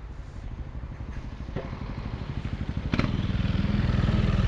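Motor scooter engine running close by with a rapid low pulsing that grows steadily louder, and a sharp click about three seconds in.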